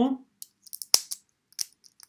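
Plastic parts of a small Transformers Micromaster toy clicking as they are turned by hand during transformation: one sharp click about a second in, with a few fainter clicks around it.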